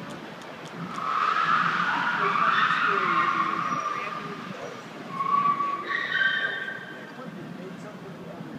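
Car tyres squealing in a long skid for about three seconds, then a second burst of shorter screeches about five to six seconds in, from stunt cars driving a movie chase scene.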